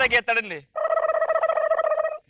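A man's voice: a few quick words, then one long, steady, high-pitched note held for over a second, likely a vocal imitation within the comic routine.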